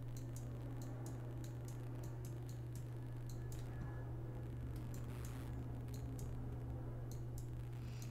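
A low, steady electrical hum with faint, irregular clicks and taps from a stylus on a Wacom graphics tablet as the Liquify brush is dragged.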